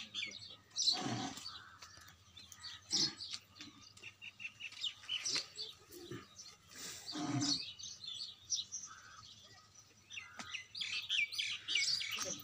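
Small birds chirping and twittering in quick, repeated high calls, with a few louder, fuller sounds about a second in and again around seven seconds in.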